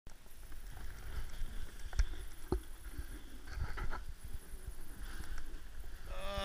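Snowboard sliding and scraping over packed snow, with jacket rustling close to the microphone and a couple of sharp knocks about two seconds in.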